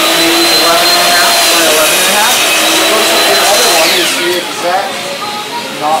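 A high-pitched electric motor whine with a rushing sound, running steadily and then winding down about four seconds in.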